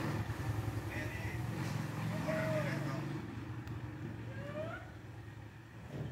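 A low, steady engine rumble with faint voices in the background, growing quieter over the last couple of seconds.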